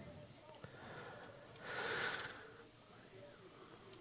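A man's breath near the microphone: one exhale about two seconds in, over faint room tone.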